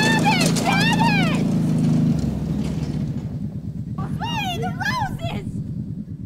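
Riding lawn mower engine running, its note dropping lower and pulsing about two seconds in. High-pitched cries rise and fall over it twice, near the start and again around four seconds in.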